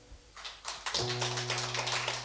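Audience applause after a song, starting about half a second in and growing fuller, with a low note ringing on the acoustic guitar underneath.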